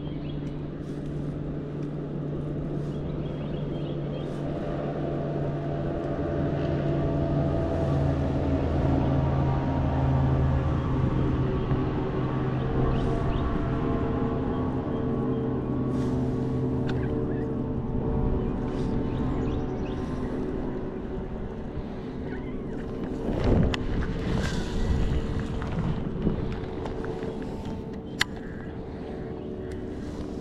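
A boat motor running steadily with a low, even hum that grows louder over the first ten seconds or so and then eases off, with a few knocks and a sharp click near the end.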